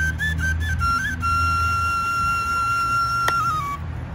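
Bansri flute played solo: a few quick stepped notes, then one long held high note for over two seconds that drops slightly and stops shortly before the end.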